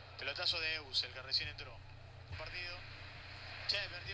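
Faint speech from a football match commentator on the played-back highlight footage, in short phrases over a low steady hum.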